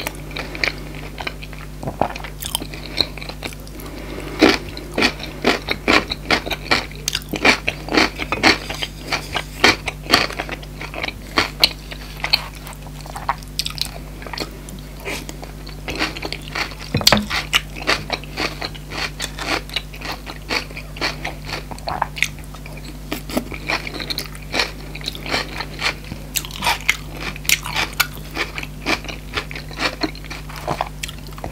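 Close-miked chewing of a mouthful of chicken fajita wrap, with many sharp, irregular wet mouth clicks and crunches all through. A steady low hum runs underneath.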